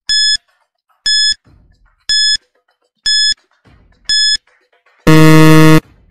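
Quiz countdown timer sound effect: five short, high beeps one second apart, then a louder, lower-pitched buzzer lasting just under a second that signals time is up.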